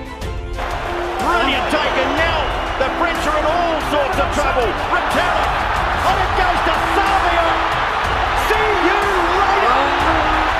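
Background music gives way, about half a second in, to the loud, steady roar of a packed stadium crowd from a rugby match broadcast, with a TV commentator's voice over it.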